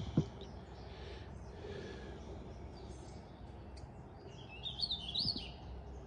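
Quiet outdoor background noise with a faint click near the start, and a bird singing a short, rising, chirpy phrase about five seconds in.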